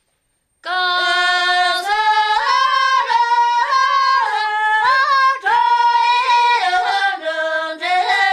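A woman singing a Tibetan folk song solo, starting after a moment of silence, in long held notes that step up and down in pitch.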